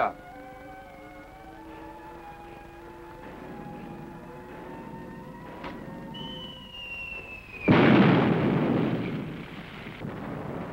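Dramatic score holding sustained notes, then the falling whistle of an incoming shell about six seconds in, ending in a loud explosion that dies away over a second or so.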